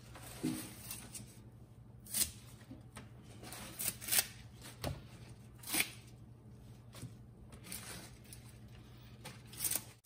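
Turnip greens and collard leaves being torn off their stems by hand, with a crisp rip or snap every second or so between softer leaf rustling. A faint low hum runs underneath.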